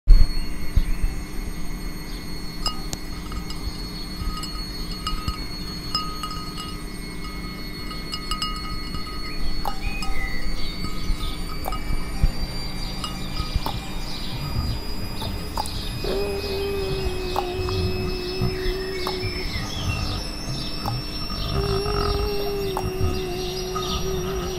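Experimental sound-art soundscape: steady high whistling tones over a low rumble, with scattered clicks. A wavering lower tone comes in about two thirds of the way through and returns near the end.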